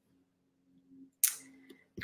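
A single sharp click about a second in, trailing off into a short hiss, over a faint steady low hum.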